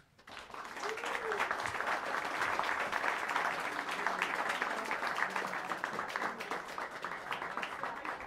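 Audience applause welcoming a band onto the stage, swelling quickly about half a second in, holding steady, and starting to thin out near the end.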